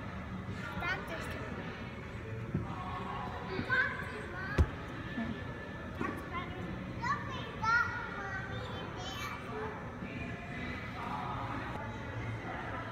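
Children playing: short high-pitched calls and chatter over the steady background din of a large indoor hall, with one sharp knock about four and a half seconds in.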